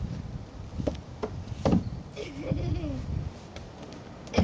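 A large ball knocking against a plastic playground slide: three short hollow knocks, the third the loudest, followed by a brief wavering voice sound.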